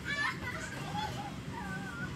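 Children's voices at play: high-pitched calls and chatter, with a short shrill cry just after the start.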